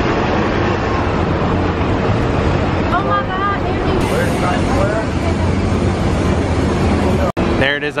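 Busy city street: a steady wash of car and bus traffic, with voices of passers-by rising out of it a few seconds in. The sound cuts off abruptly near the end.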